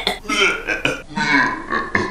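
A woman making a few exaggerated gagging, retching noises in mock disgust at the taste of canned Vienna sausages.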